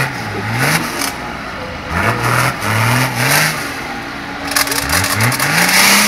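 Nissan Patrol diesel engine revving hard in repeated bursts, each rising in pitch, as the off-road vehicle claws up a steep dirt bank under load, with bursts of noise between the revs.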